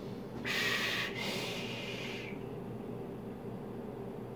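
A hard draw and exhale through a Geek Vape Athena squonk mod with dual alien coils: a breathy rush of air starting about half a second in and lasting nearly two seconds.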